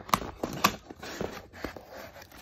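Cardboard shipping box being handled and opened: irregular rustles, scrapes and light taps of cardboard and paper under the hand.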